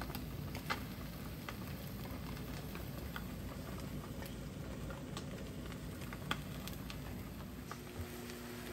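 Fish fillets frying in a nonstick pan over medium heat: a steady soft sizzle and bubbling, with scattered small pops and ticks from the spitting oil.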